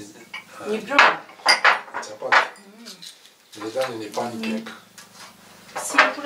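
Plates and cutlery clinking and clattering, a handful of sharp clinks in the first half.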